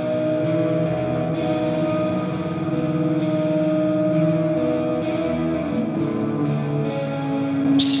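Electric guitar played through the Audio Assault Shibalba amp sim on its clean channel with a little overdrive, washed in chorus, a quarter-note delay and large reverb: held, blooming shoegaze chords that ring into one another.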